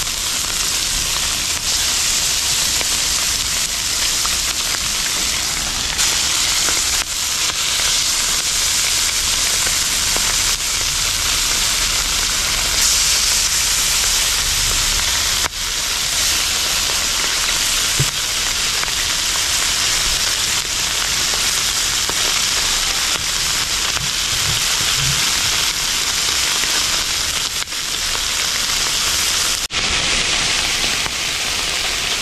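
Masala-coated Indian mackerel (ayala) sizzling steadily on a hot flat iron griddle, with a few faint knocks in the second half.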